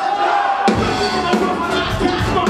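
Live brass band with tuba, saxophone, trumpets, trombone and drum kit playing. It opens on a held note with no bass or drums, then the full band with tuba and drums comes back in about two-thirds of a second in.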